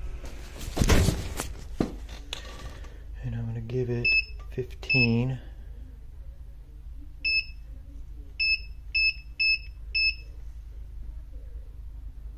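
Front-panel key beeps from a BK Precision 9115 bench DC power supply as it is set to 15 V and its output switched on to charge the battery pack's low cell bank. There are seven short, high beeps: two about four to five seconds in, then five between about seven and ten seconds, the last four about half a second apart. A loud rustle of handling comes about a second in.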